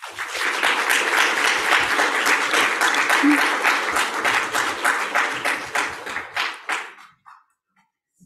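Audience applauding: many hands clapping steadily, then thinning out and stopping about seven seconds in.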